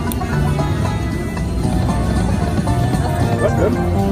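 Slot machine bonus music, a steady electronic tune, playing as the reels spin and land during free games.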